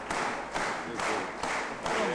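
Audience applauding in unison, a rhythmic beat of about two claps a second.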